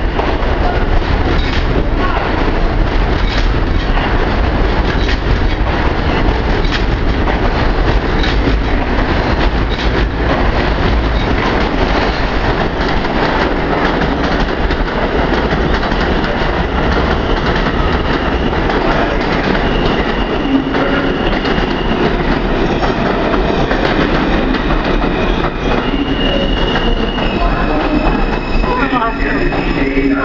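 Subway trains in an underground station. An R160 train pulls out past the platform with a loud, steady rumble and clatter of wheels. Over the last several seconds a train on the far track runs in with high, steady squeals.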